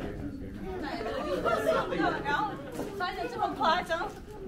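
Chatter of several people talking at once, some voices high-pitched, louder in the second half.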